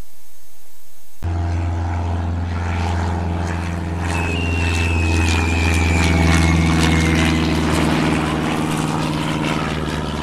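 A brief stretch of muffled cockpit noise, then, about a second in, an abrupt cut to a propeller airplane's steady engine drone. A high whistle glides slowly down over it from about four to seven seconds in.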